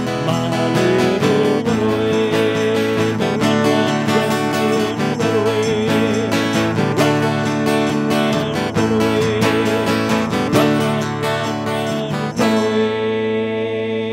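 Live acoustic group: a strummed acoustic guitar with hand drums and several voices singing along. About twelve seconds in they land on a final held chord that rings out.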